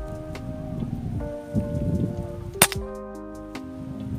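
Background guitar music with a rustling noise under it, then a single sharp shot from a PCP air rifle about two and a half seconds in.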